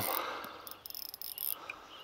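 Faint, high-pitched chirping of insects, crickets or the like, repeating irregularly.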